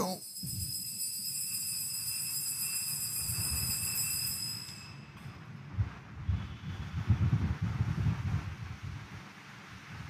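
Altar bells ringing at the elevation of the consecrated host, a bright, high ringing that sustains and fades out about five seconds in. A low rumble follows.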